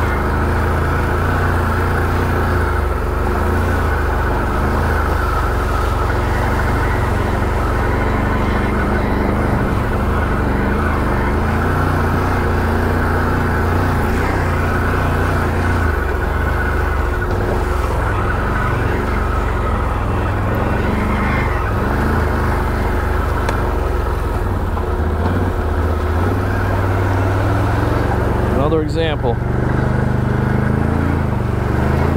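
Can-Am Renegade 1000 XMR ATV's V-twin engine running steadily at low trail speed, picking up a little in the last few seconds. Near the end a brief sweeping sound cuts across it.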